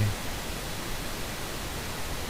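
Steady hiss of the recording's background noise, with no other sound standing out.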